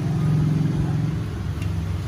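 A machine running steadily with a low, even hum, a little louder in the first second.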